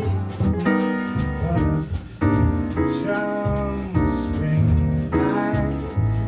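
Live jazz piano trio playing: piano chords struck over double-bass notes, with drums and cymbal strokes keeping time.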